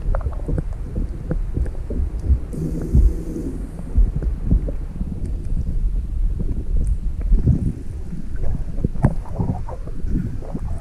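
Muffled underwater rumble heard through a submerged camera in lake water, with irregular knocks and clicks against the housing and a brief low hum about three seconds in.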